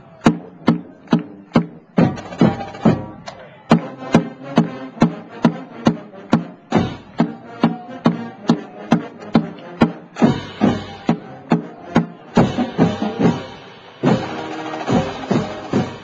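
Marching band drumline of snare drums and bass drums playing a street cadence, sharp accented strokes about two to three a second.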